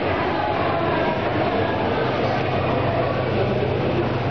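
A 360-degree motion simulator's drive running as the pod rotates on its arm: a steady mechanical whir over a low hum that grows a little stronger about halfway through.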